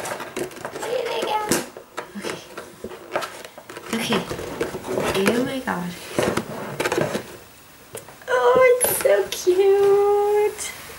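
Thin clear plastic box being handled and opened: crinkles, clicks and taps of the plastic, with brief wordless vocal sounds from the person in the middle and near the end.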